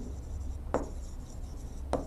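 Pen writing on an interactive display board: faint scratchy strokes, with two sharper taps or strokes, one under a second in and one near the end.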